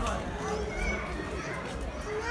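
Outdoor crowd chatter: several people talking at once, none clearly in front, with children's voices among them, over a steady low rumble.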